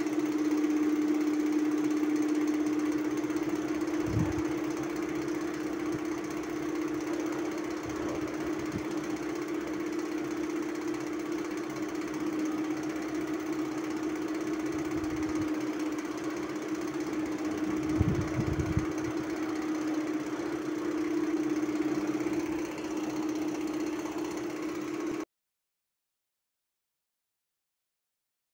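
An engine or motor running steadily with a constant hum, with a dull thump about four seconds in and a couple more around eighteen seconds; the sound cuts off abruptly shortly before the end.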